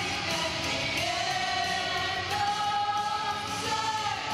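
Male vocal group singing a song live: a soloist holds a long note, stepping up slightly partway through, over backing vocal harmonies and musical accompaniment.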